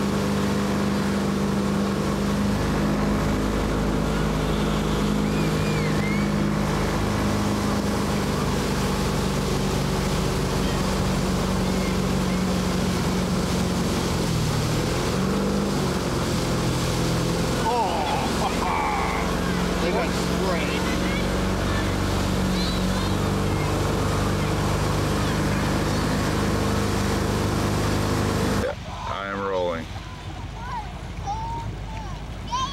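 Motorboat engine running steadily while towing an inflatable tube, over a rush of wake water and wind; the engine note dips and comes back up briefly about halfway through. Near the end the engine sound cuts off suddenly and voices take over.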